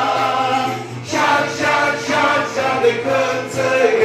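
A large group of men singing a church song together, in phrases with short breaks between them.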